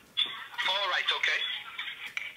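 Indistinct speech heard over a telephone line, thin and muffled, with everything above the phone's narrow band cut away.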